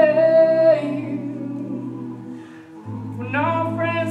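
All-male a cappella group singing: the lead voice holds a long note over sustained backing harmonies. The lead breaks off about a second in, the backing chord changes near the end, and the lead comes back in.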